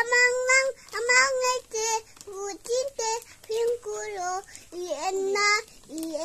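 A young boy singing in a high voice, a string of short held notes with brief breaks between them.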